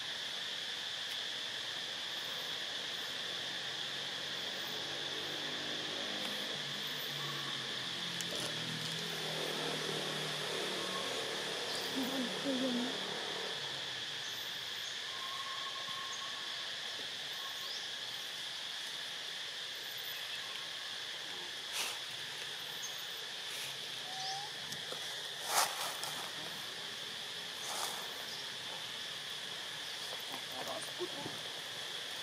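Steady, high-pitched drone of insects, holding two even tones throughout. Distant human voices murmur for a few seconds before the middle, and a few sharp clicks come in the second half.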